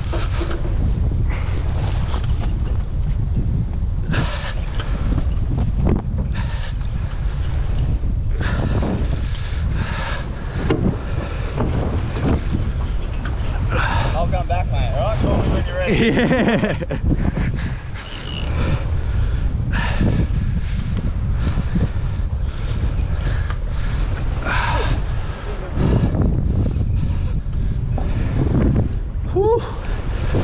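Steady wind rumble buffeting the microphone out on open water, with sea washing along the side of the boat's hull. Indistinct voices call out now and then.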